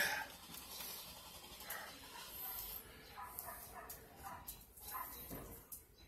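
A dog whining faintly, in short, quiet bursts.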